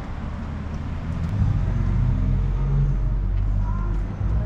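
Street traffic: a road vehicle's low engine rumble that swells about a second and a half in and stays steady.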